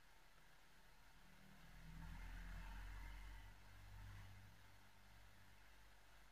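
Near silence: faint room tone, with a faint low rumble that swells up and fades away over about three seconds in the middle.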